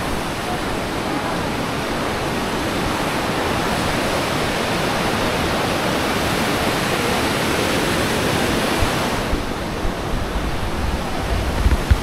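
Rocky mountain river rushing over boulders in whitewater rapids: a loud, steady roar of water that eases a little about nine seconds in.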